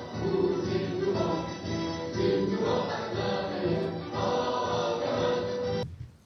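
Recorded music with a choir singing, cutting off suddenly near the end.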